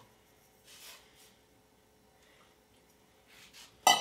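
Dry malt extract powder poured from a stainless steel bowl into a pot, a faint soft rustle, then near the end a single sharp metallic clink with a brief ring as the steel bowl is set down.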